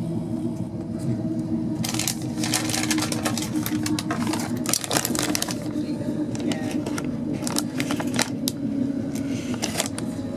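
Crinkling and crackling of a plastic sweet wrapper being handled, from about two seconds in until near the end. Underneath is the steady low rumble of a Class 390 Pendolino electric train running, heard from inside the carriage.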